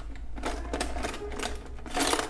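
Quick, irregular run of light clicks and rattles from small hard items handled by hand, as a crochet hook is fetched.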